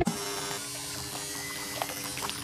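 A steady buzzing hum with an even hiss, as a thin stream of water trickles from a plastic tube into the plastic drum of a toy cement mixer.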